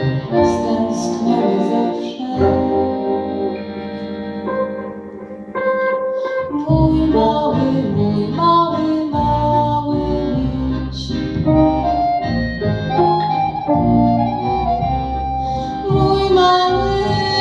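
Instrumental break of a small acoustic band: accordion leading over acoustic guitar and double bass. About two seconds in the band eases into a quieter held chord, then the full band with the double bass comes back in near the middle.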